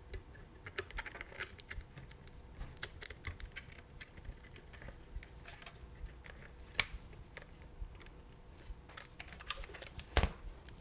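Faint, irregular small clicks and taps of metal camera rigging parts being handled: a side bracket and accessory being fitted to a Sony FX6 camera body, with one sharper click a little before seven seconds in.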